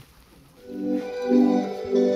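A recorded song starts about half a second in, fading up: held keyboard chords, the opening of a romantic urban-music track being played back.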